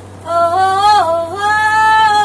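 A woman singing long held notes in a strained, emotive voice, starting about a quarter second in; the pitch dips briefly near the middle, then climbs to a higher held note.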